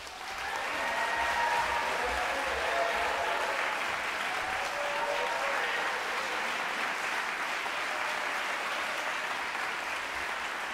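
Audience applauding in a concert hall, starting suddenly and then holding steady.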